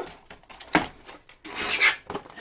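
Clear plastic packaging tray of an action figure being handled: a short scrape, then a longer, louder rubbing scrape near the end.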